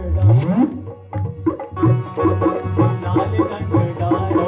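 Live devotional music from an electronic drum pad played with sticks, a keyboard and a harmonium. It opens with a rising swoop in pitch, drops out briefly about a second in, and picks up again with a steady drum beat just under two seconds in.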